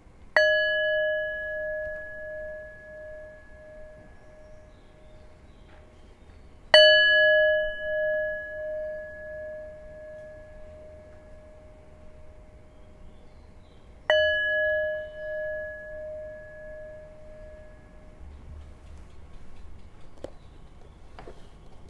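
A metal bell struck three times, about seven seconds apart, each strike ringing out with a wavering tone that fades over several seconds.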